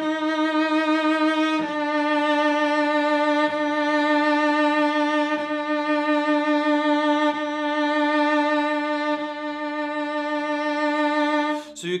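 A cello holds one sustained note with left-hand vibrato, bowed in long strokes with a bow change about every two seconds, until it stops near the end. It is a vibrato exercise: the vibrato starts slow and is made faster and narrower bit by bit.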